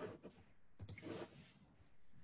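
Faint computer mouse clicks, a short cluster of them about a second in, as slide drawing tools are worked.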